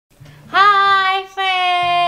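A high singing voice holds two long notes, the second one gliding slightly down, over low steady backing notes.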